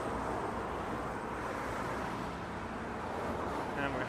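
Steady road noise of car traffic driving past in the bridge lanes right beside the walkway.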